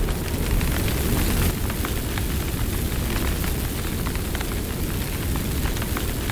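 Fire sound effect: a steady rush of flames with a deep rumble underneath and scattered small crackles.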